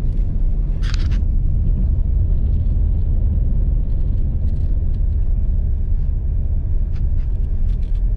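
Steady low rumble of a vehicle driving slowly along a rough, wet paved road. There is a brief rattle about a second in and a few light ticks near the end.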